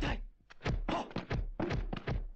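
Kung fu film fight sound effects: a rapid run of dull, heavy punch-and-block thuds, about five a second.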